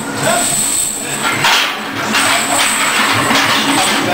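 Loud, rough shouting in several bursts from the lifter and the people around the rack as a heavy barbell is driven up from the box.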